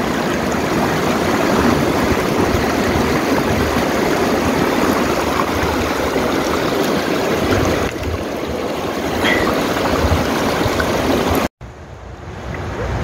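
Shallow stream water running steadily over stones, close to the microphone. Near the end it cuts out for an instant and comes back quieter.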